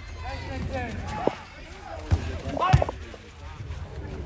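Players shouting and calling to each other during a small-sided soccer game, with a few sharp thuds of the ball being kicked on artificial turf; the loudest thud comes about three seconds in.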